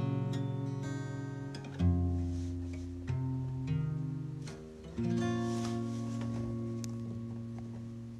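Acoustic guitar playing the closing chords of a song with no voice. Each chord is struck and left to ring and fade, with fresh chords about two, three, three and a half and five seconds in; the last one rings out slowly.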